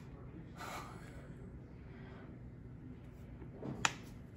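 Quiet room tone with a soft rustle of a sheet of fanfold computer printout paper being handled, then a short, sharp intake of breath near the end.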